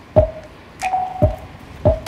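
Instrumental beat playing: three deep kick-drum hits with a falling pitch and a sharper snare-like hit between them, under a short held synth note.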